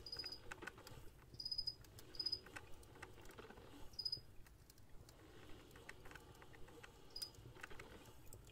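Pen writing on paper: faint light scratching and tapping, with five short high-pitched squeaks spread through.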